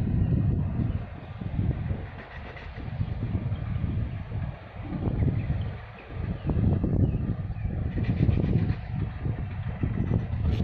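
Wind buffeting the microphone: a low, uneven rumble that swells and fades every second or two.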